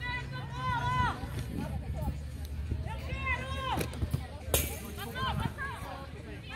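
Indistinct, high-pitched shouts from people at a rugby match, heard from across the field: a call at the start, another about three seconds in and a shorter one about five seconds in, with a brief sharp noise a little after four seconds.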